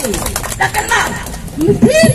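A woman's voice amplified through a handheld microphone, in drawn-out syllables whose pitch slides down and then rises again near the end, with a brief lull in between.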